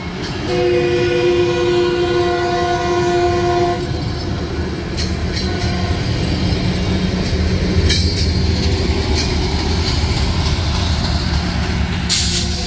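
Metrolink commuter train passing at a grade crossing: a train air horn sounds one long chord from about half a second in to nearly four seconds, over the steady rumble and wheel clicks of bi-level coaches rolling by. The low rumble grows toward the end as the diesel locomotive pushing at the rear comes past.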